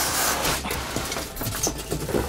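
Black plastic sheeting rustling and crinkling as hands handle a wrapped package, with a burst of rustle at the start and then a string of small crackles.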